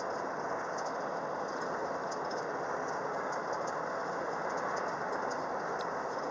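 Steady road and engine noise of a car driving at speed, heard inside the cabin, with faint scattered rattling ticks.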